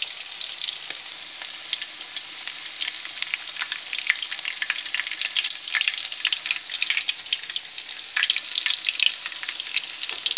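Cauliflower patties shallow-frying in oil in a pan: a steady sizzle of many small crackling pops, busier in spells. A spatula scrapes the pan as the patties are turned over.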